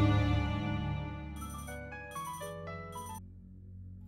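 Background music fades out. Then a mobile phone's melodic ringtone plays a short run of stepping notes, from about a second and a half in until near the end.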